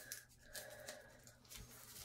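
Near silence with a few faint rustles and scratches of a bar of soap's packaging being worked open by hand.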